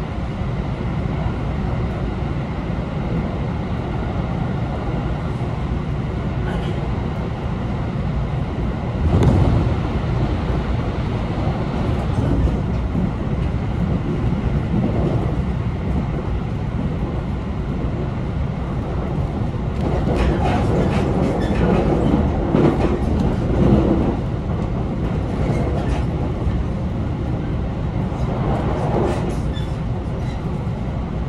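A JR Tokaido Line rapid train running at speed, heard from inside the car: a steady low rumble of wheels on rail that swells louder about nine seconds in and again around twenty seconds in, with runs of quick clicks from the wheels.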